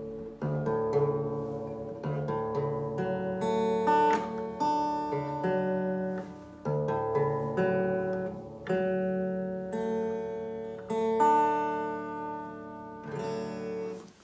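Guitar in a D-based alternate tuning (a variation on D A D F A D), played as a string of chords and notes that are struck and left to ring. The chords change every second or so, with brief dips between some of them.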